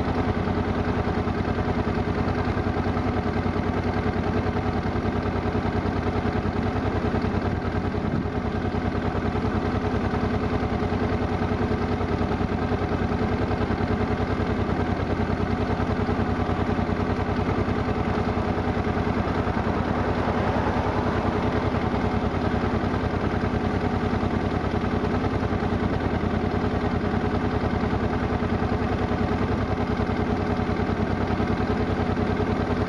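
A steady machine-like drone with a fast, even pulse, unchanging in level.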